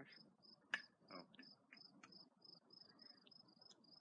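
An insect chirping in a steady high-pitched rhythm, about three short chirps a second, faint against near silence. A single sharp click stands out a little under a second in.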